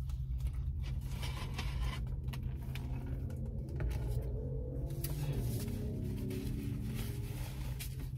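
Low steady rumble of an idling vehicle engine. Over it come sips through a plastic drinking straw, small mouth and cup clicks, and a faint wavering hum around the middle.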